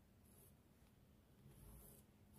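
Near silence, with the faint scratch of a marking tool being drawn across sequined fabric, one stroke near the end.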